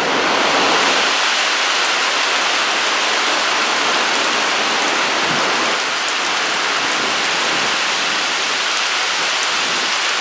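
Heavy thunderstorm rain coming down on the lake, a steady, even hiss.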